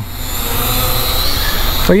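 Small quadcopter drone's motors and propellers whirring steadily, with a faint high whine that rises briefly a little past halfway, over a low rumble.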